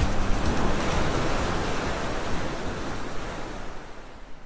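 Steady rushing noise of an airliner cabin in flight, fading out gradually.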